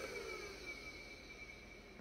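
Juniper EX3300-24T network switch's cooling fans winding down as the unit powers off, a faint whine falling in pitch and fading until the switch is nearly quiet.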